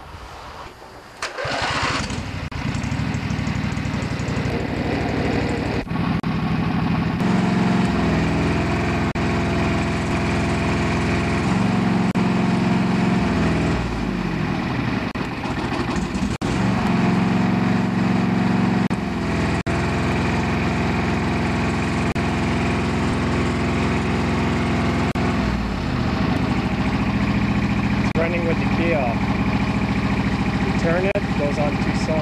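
Briggs & Stratton lawn tractor engine cranked by the electric starter and catching about a second and a half in, then running steadily, its pitch shifting several times. The ignition key is turned off but the engine keeps running: the run-on fault the video traces to a failed ignition diode on the engine's shut-off wiring.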